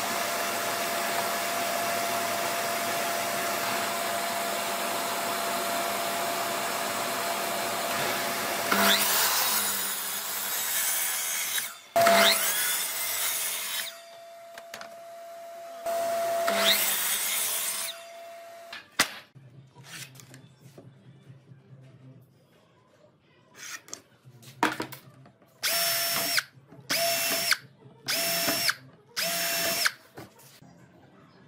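Electric compound miter saw running with a steady motor whine, cutting a hardwood board, then started up for three more short cuts. Near the end come four or five short bursts of a power tool.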